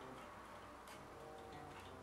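Faint notes and soft string clicks from an unplugged electric bass guitar being quietly fingered and plucked, over a low steady mains hum.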